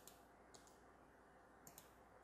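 Near silence: faint room hiss with three brief, faint clicks, one at the start, one about half a second in and one near the end.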